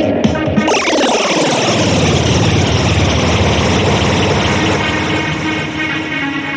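Electronic music track with a long falling pitch sweep: many tones begin sliding down together about a second in and keep descending for several seconds.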